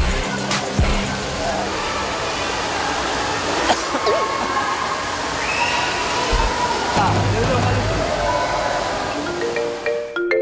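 Pool water splashing and sloshing as a person wades and thrashes through waist-deep water, under background music.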